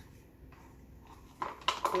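Quiet room tone with a few light plastic clicks and knocks, bunched near the end, as plastic cups are handled and tapped against one another while acrylic paint is poured.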